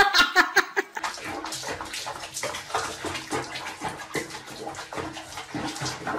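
Water sloshing and splashing in a small basin as a cat moves in its bath, in quick irregular splashes. A short stretch of music with sliding notes ends about a second in.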